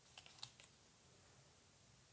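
A few faint clicks and ticks from paper cards being handled in the first half-second or so, then near silence.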